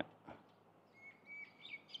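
Faint bird calls over quiet outdoor background noise: a thin steady whistle from about a second in, then a few quick falling chirps near the end.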